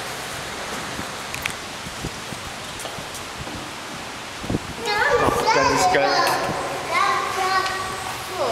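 Background crowd murmur, then from about five seconds in, loud, high-pitched children's voices chattering and squealing excitedly.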